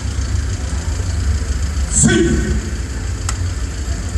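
A steady low rumble of outdoor street ambience, with one short shouted call about two seconds in.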